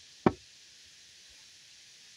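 A single sharp knock on wood about a quarter of a second in, followed by a faint steady hiss.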